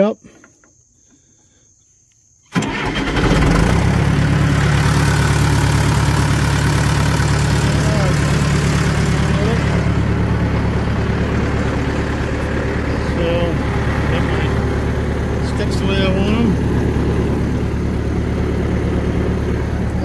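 John Deere 450 crawler's engine starting about two and a half seconds in, then running at a steady idle.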